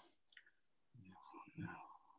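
Near silence, with a faint murmured voice for about a second in the second half.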